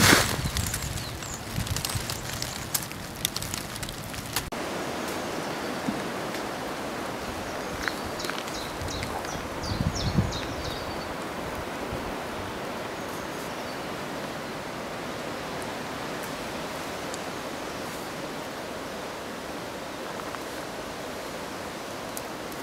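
Strong wind rushing steadily through the forest canopy, an even hiss. The first few seconds hold close rustling and clicking.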